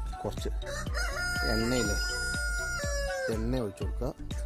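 A rooster crowing once: one long call, rising at the start, held for nearly two seconds, and falling away at the end. Background music with a steady beat plays underneath.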